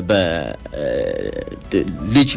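A person's voice making a drawn-out, wordless sound: it slides down in pitch at the start, then holds low and rough for about a second, with a short syllable near the end.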